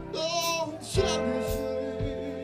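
Live blues-rock band playing: a high lead line bends and wavers in pitch in the first second, over electric guitars, bass and drums hitting a steady beat.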